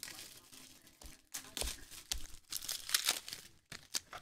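Trading cards and their foil pack wrappers being handled: irregular crinkling and rustling, with cards sliding against each other.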